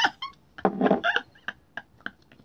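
A woman laughing hard in short, broken bursts while straining to twist open a stuck bottle cap.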